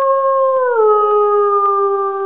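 Wolf howl used as a ringtone: one long, loud call that holds its pitch, then steps down to a lower note about two-thirds of a second in and holds there.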